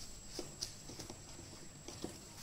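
Plastic ruler being handled on drawing paper: a soft brushing sound at the start, then a few light taps and clicks as it is lifted and shifted.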